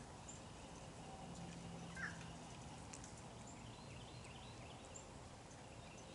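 Quiet outdoor ambience with a few faint bird chirps, the clearest one about two seconds in and a short run of small high chirps a little later.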